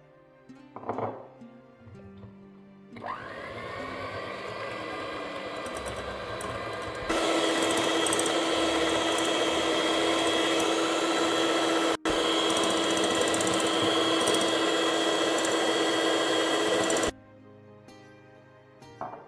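Electric hand mixer beating eggs and sugar in a glass bowl. The motor whines up to speed about three seconds in, gets much louder at about seven seconds, drops out briefly near the middle, and stops abruptly about a second before the end.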